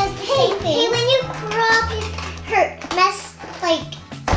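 A young child's voice, talking in a playful sing-song way, over background music with held low notes.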